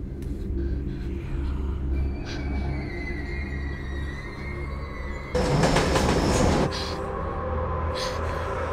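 Subway train in the tunnel: thin high wheel squeal from about two seconds in, then a sudden loud rush lasting about a second and a half. Throughout runs a low pulsing drone of film-score music.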